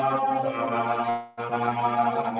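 A low male voice chanting a Buddhist mantra on one long held note, which stops for a moment a little over a second in and starts again at the same pitch.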